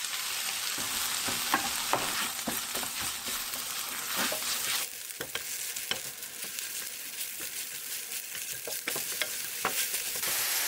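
Strips of fish cake sizzling as they stir-fry in hot oil with garlic over high heat, with repeated scrapes and taps of a spatula turning them in the pan. The sizzle gets a little thinner about five seconds in.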